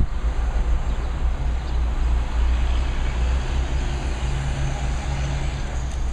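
City street traffic with a heavy diesel truck running close by: a steady low engine rumble under general road noise, the engine note growing a little stronger about four seconds in.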